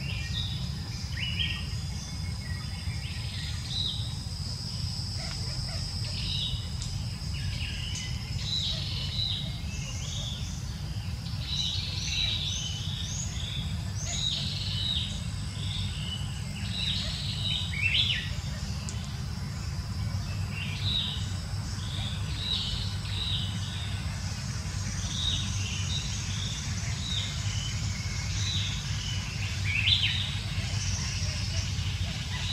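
Birds chirping in the trees: many short chirps in quick succession, over a steady low rumble and a faint steady high whine.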